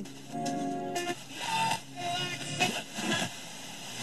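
Tivoli Audio Model One table radio playing FM broadcasts through its small speaker while its tuning dial is turned, giving short snatches of music and voices that change about every second.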